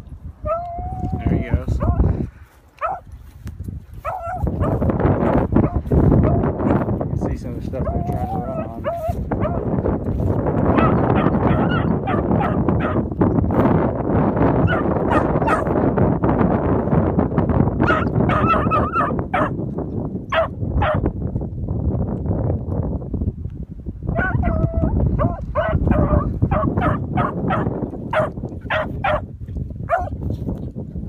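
Beagles barking and baying while trailing a rabbit's scent: a few calls early on, a cluster partway through, then a quick run of short barks near the end. Heavy wind noise on the microphone runs through the middle.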